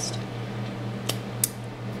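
Two short, sharp clicks about a third of a second apart as the cream is tasted, over a steady low hum.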